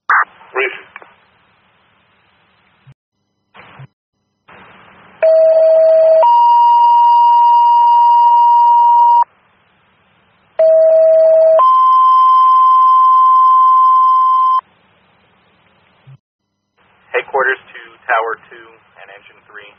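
Fire dispatch two-tone pager alert over a scanner radio. A lower tone held about a second steps up to a higher tone held about three seconds, and the pair is sent twice. It alerts the fire companies just before a new call goes out.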